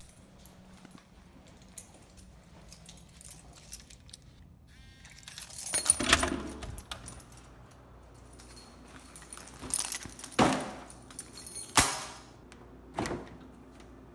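Keys jangling and rattling as a door is unlocked and opened, with loud clattering about six seconds in, then several more knocks and rattles of handling.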